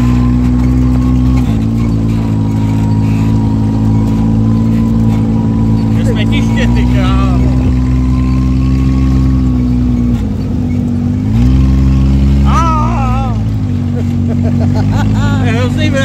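Dune buggy engine running under load while driving over desert sand, heard from the seat, with a thin steady whine above it. The engine note steps up and down with the throttle a few times and is highest for about a second just before twelve seconds in. Brief shouts cut in now and then.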